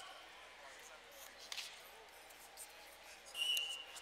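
Referee's whistle blown once, a short steady shrill tone about three seconds in, starting the wrestling bout, over faint gym-hall background noise with a single thump earlier.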